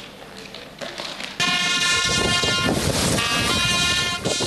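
A loud, steady horn-like note starts about a second and a half in and holds, shifting pitch once near the end, over a background of noise.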